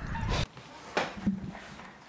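Wind rumbling on the microphone that cuts off suddenly about half a second in, followed by quiet room tone with a faint click about a second in.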